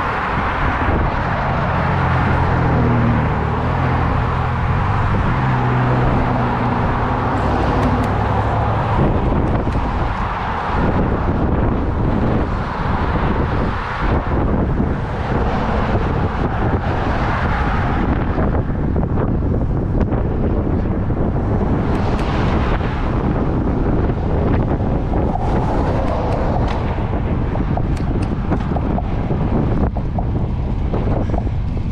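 Wind rushing over a bicycle-mounted action camera's microphone while riding, mixed with car traffic passing close by on the road. A passing vehicle's low engine and tyre hum stands out for about the first nine seconds, then fades into the wind and traffic noise.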